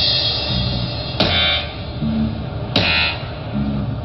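Live band playing an instrumental passage, with a loud chord struck about every one and a half seconds over a steady low rhythmic pulse.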